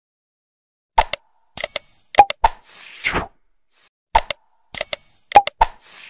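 Sound effects of a YouTube subscribe-button animation: sharp mouse clicks, a bright bell chime, pops and a whoosh. The sequence plays about a second in and repeats about three seconds later.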